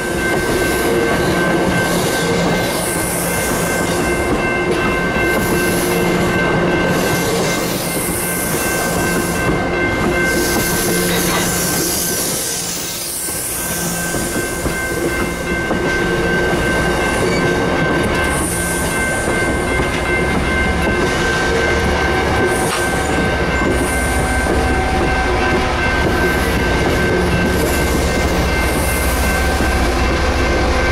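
Bilevel commuter rail coaches rolling past at close range, wheels rumbling and clacking over the rails, with a steady ringing from the grade-crossing signal. Near the end a deep engine drone builds as the train's diesel locomotive approaches.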